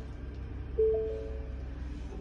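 Vehicle dashboard warning chime: a clear two-note bell-like tone sounds once about a second in and dies away, over a low steady hum.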